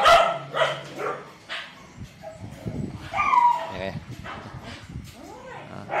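A dog whimpering: a few short, high whines, one falling in pitch about three seconds in.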